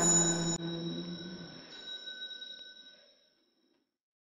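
The assembly's chant ends on a held note about a second and a half in, over the ring of a bell. The bell sounds once more near two seconds and fades away.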